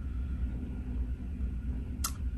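Steady low rumble and hum of background room noise, with a faint high steady tone.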